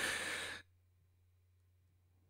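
A short, breathy sigh close to the microphone, lasting about half a second, followed by only a faint steady low hum.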